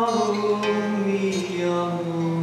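A man singing long held notes over acoustic guitar accompaniment. The pitch shifts to a new sustained note about a second and a half in.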